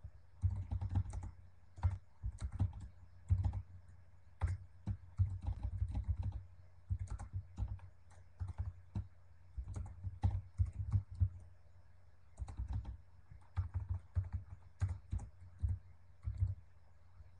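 Typing on a computer keyboard: uneven runs of keystrokes separated by short pauses.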